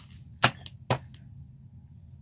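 Two sharp taps, about half a second apart, over a low room hum.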